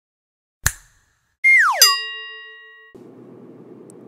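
Cartoon-style logo sound effect: a short click, then a tone sliding quickly downward like a boing, landing on a bright bell-like ding that rings out and fades over about a second.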